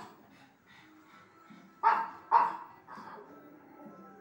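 Pug barking: two loud, sharp barks about half a second apart in the middle, with a fainter bark at the start and another just before three seconds in.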